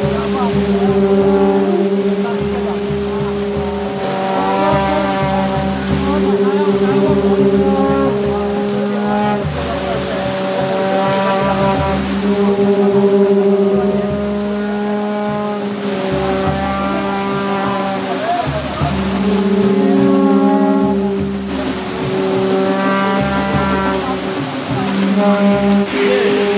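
Folk procession music from wind instruments playing long held, horn-like notes, each lasting several seconds with brief breaks between them, over voices of the crowd.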